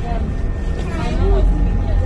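Steady low rumble of a vehicle heard from inside its cabin, with a child's voice chattering briefly over it.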